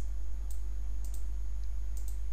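Computer mouse clicks: about six short, sharp clicks spaced irregularly, two in quick succession about a second in, over a steady low electrical hum.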